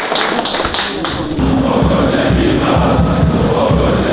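Men shouting together in a team huddle fade out in the first second or so. About a second and a half in, a large stadium crowd takes over, chanting together with a low pulsing underneath.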